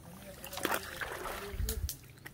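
Footsteps over loose river cobbles: scattered sharp clicks and scrapes of stone on stone, with a few dull thuds near the end.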